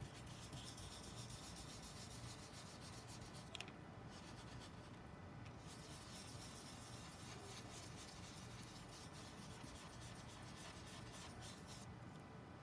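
Faint, steady brushing of a round blending brush swirled in small circles over cardstock and dabbed on an ink pad as it lays down ink. A light click sounds a few seconds in.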